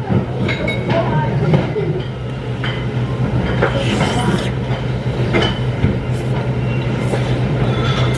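Restaurant ambience: a steady low hum under scattered light clinks and knocks of tableware, with faint voices.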